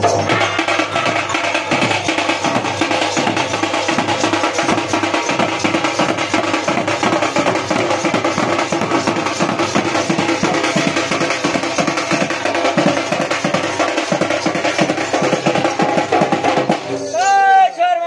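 Folk dance music: a two-headed barrel drum beaten in a quick steady beat under a dense, sustained melody. About a second before the end, sliding pitched notes come in.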